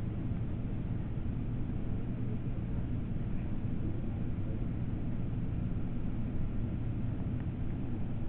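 Steady low background hum of room or recording noise, with no distinct sound events.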